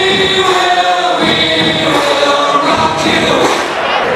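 Singing voices over music, holding long sustained notes.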